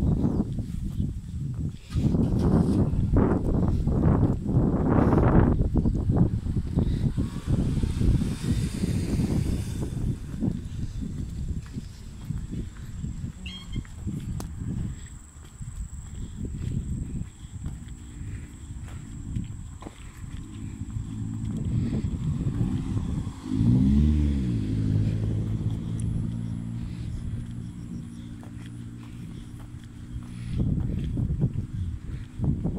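Road traffic: car engines running low and steady, with a low rumble of wind on the microphone. About three quarters of the way through, one engine's hum rises and falls as a car goes by.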